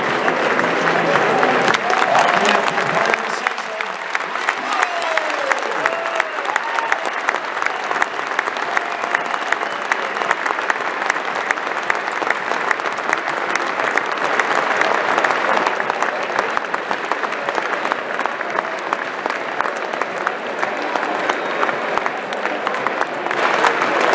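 Football stadium crowd applauding steadily, thick with individual claps, with a few voices and shouts from the crowd in the first few seconds.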